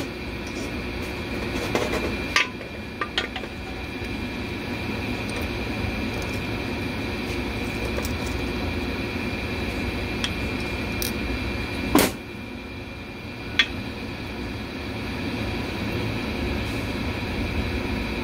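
Steady background hum with a few sharp metallic clicks and knocks, the loudest about twelve seconds in, from a hand tool and the rollers as the reverse sprag (overrunning clutch) is worked into a Dodge 727 three-speed automatic transmission case.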